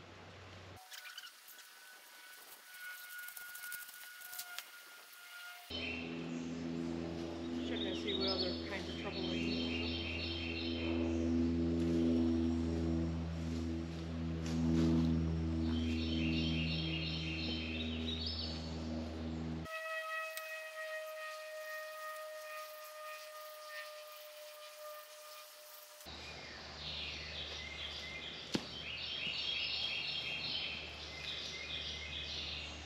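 Background music of long held chords with a short high figure that repeats every several seconds; the music changes abruptly a few times.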